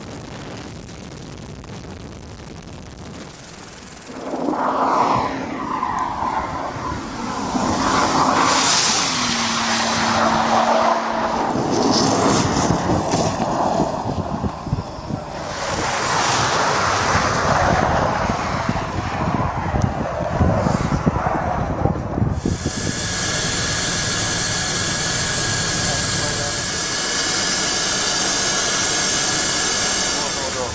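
Bentley Continental Supersports running flat out on ice. About four seconds in it comes past loud, its pitch falling as it goes by, followed by stretches of engine and rushing noise, then a steadier hum with held whining tones near the end.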